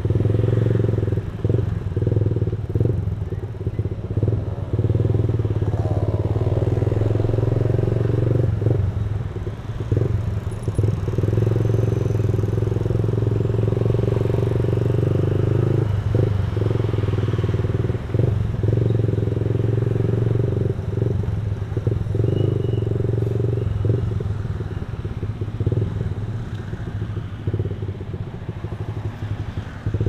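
Small automatic scooter's engine running steadily as it rides slowly through traffic, a constant drone broken by many short irregular thumps.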